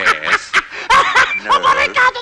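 A cartoon character's gibberish voice chattering and snickering in quick, pitch-bending syllables.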